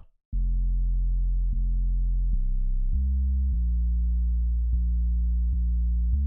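A deep 808 bass line played alone from an FL Studio piano roll: long sustained low notes stepping between pitches, starting just after a brief silence. This is the 808 variation used in the beat's break.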